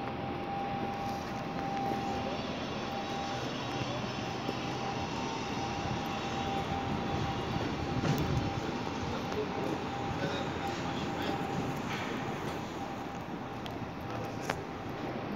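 Steady city street background noise with a thin, constant whine running through it. A low rumble swells about eight seconds in, like a vehicle passing.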